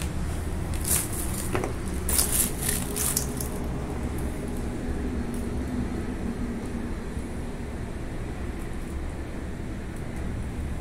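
Steady low background rumble, with a few short crackling rustles in the first three seconds.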